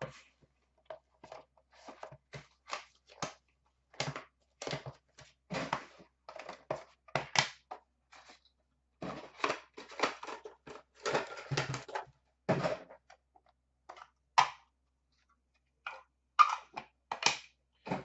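Plastic shrink wrap being torn and crinkled off a trading-card box, then cardboard and a hard plastic card case being handled and opened, in short irregular crackles and snaps with a brief lull about two-thirds of the way through.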